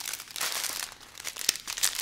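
Thin plastic zip bags of diamond-painting drills crinkling as they are handled and laid down, a run of irregular crackles that comes in two louder spells.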